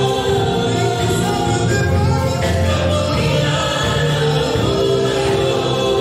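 Gospel worship team singing together in harmony, a choir of several voices holding long notes over a live band with keyboard, bass and drums.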